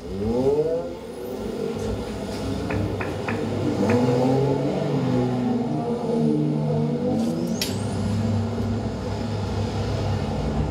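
A sound piece made from the savanna, played over room speakers: layered droning tones that glide upward in the first second and then hold, four sharp clicks about three seconds in, and a high whistle that sweeps up and falls away late on.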